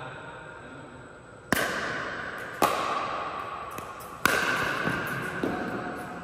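Pickleball paddles striking a plastic ball in a rally: three sharp pops, the first about a second and a half in, then one a second later and one more near the middle, with fainter ticks between them. Each pop echoes around a large indoor court hall.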